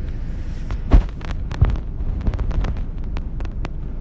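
Steady low rumble of a vehicle's cabin, with a string of small clicks and knocks close to the microphone, the loudest thump about a second in and another a little after.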